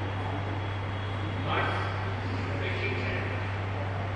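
Speech in short phrases that the recogniser did not transcribe, over a steady low hum and background hiss.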